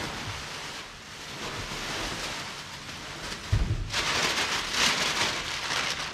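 Plastic air-pillow packing and packing paper rustling and crinkling as they are pulled out of a large cardboard box. There is a low thump a little past halfway, then the rustling gets louder and crisper.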